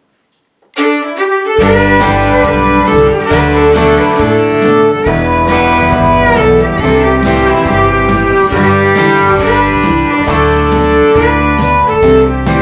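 Fiddle playing a bowed melody, starting about a second in, with guitar and bass backing joining shortly after.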